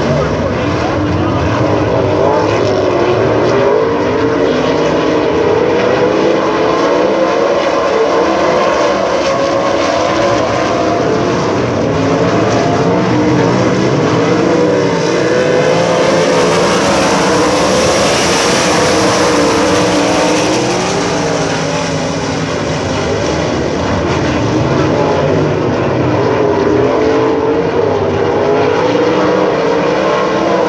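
Field of USAC sprint cars racing at full throttle, their 410-cubic-inch methanol V8 engines wavering in pitch as they lap. The sound grows louder and brighter from about 15 s in and eases off again after about 21 s, as the cars come nearest.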